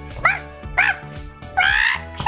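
A person's voice making three short, high-pitched squawking calls for a cartoon rooster toy: two quick ones, then a longer one near the end. Background music plays underneath.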